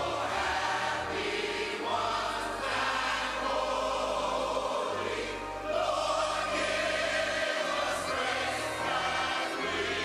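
Many voices singing together in a hymn, accompanied by an organ. The organ holds sustained bass notes that change every couple of seconds.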